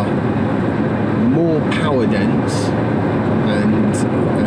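Steady road and tyre noise inside the cabin of a moving car, with a few words of a man's voice about a second and a half in.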